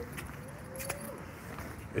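Light metallic jingling and handling clicks from a hand-held phone being carried while walking, over a low steady background hum. A faint thin tone comes and goes around the middle.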